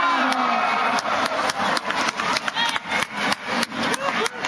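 Rapid sharp claps from spectators, about five a second, starting about a second in, over crowd voices.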